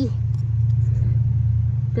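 A steady low rumble from a running motor, slightly louder here than in the seconds around it.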